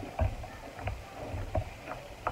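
Close-up chewing of milk-soaked tres leches cake: soft wet mouth sounds with a few small clicks.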